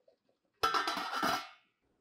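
Stainless steel lid set down on a stockpot: a brief metallic clatter about half a second in, with a short ring fading out.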